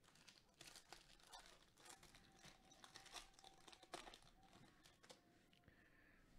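Faint crinkling and tearing of a foil trading-card pack wrapper being opened by hand, in scattered small crackles.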